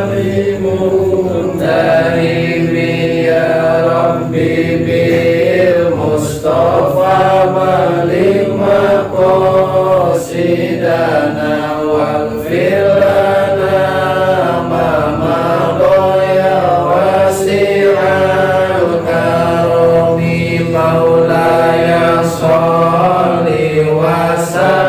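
Men's voices chanting an Arabic prayer in a slow, drawn-out melody, the long held notes gliding gently up and down with only brief breaks.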